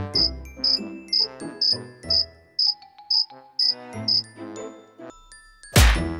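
Cricket chirps, about two a second, over light background music with a stepping melody. A short loud burst of noise comes near the end.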